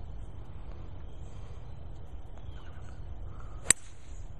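Golf driver striking a teed ball: a single sharp crack near the end.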